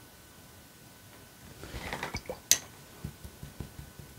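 Watercolour paintbrushes being handled and swapped among the palette and painting things: a brief rustling swish about a second and a half in, then a sharp clink of a brush against hard tableware, followed by a few light taps.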